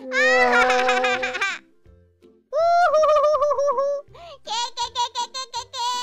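Two cartoon voices laughing hard in turn, with a brief pause between them. Near the end the laughter breaks into quick, choppy 'ah, ah, ah' bursts, over light background music.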